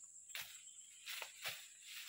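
Faint swishes and chops of a machete slashing through grass and brush, several strokes a few tenths of a second to a second apart, over a steady high insect-like hum.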